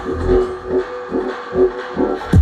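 Deep dubstep DJ set played loud over a sound system. The sub-bass thins out for most of these seconds, leaving sparse synth notes in the middle range, with a heavy bass hit returning right at the end.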